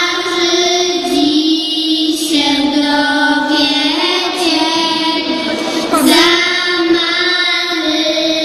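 Young girls singing a Polish Christmas carol into stage microphones, in long held notes.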